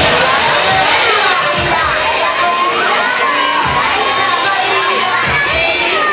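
Riders on a swinging fairground ride screaming and shouting, a loud burst of screams in the first second, then many overlapping high screams rising and falling, over loud fairground music.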